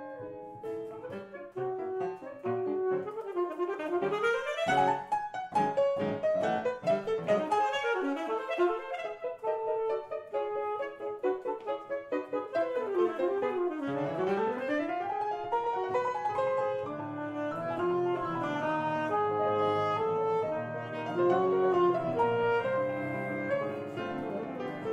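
Alto saxophone with piano accompaniment in a classical saxophone concerto. The saxophone plays fast scale runs that sweep up and down, then longer held notes with vibrato.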